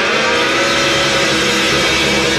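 Rock trio of distorted electric guitar, bass guitar and drums playing loudly, the guitar holding one long sustained, buzzing note over a steady low bass drone.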